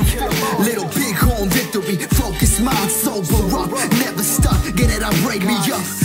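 Hip hop track: a beat with a heavy kick drum hitting about once a second, under a vocal part with gliding, speech-like sounds.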